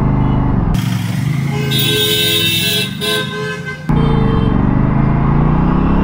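Aprilia RS 457's parallel-twin engine pulling away at low speed, its pitch rising as the bike accelerates in the second half. In the middle a vehicle horn sounds for about two seconds over a rush of noise.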